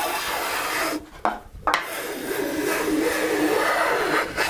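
Stanley No. 4½ hand plane shaving the edge of a cedar board. One stroke ends about a second in, followed by a short break with a light knock, then a long, even full-length stroke. It cuts all the way along because its short sole rides down into the board's concave middle.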